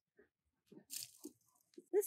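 A brief crunch and rustle about a second in, as long-handled loppers are worked in among the woody rose canes at the base of the bush, with a few faint scrapes around it.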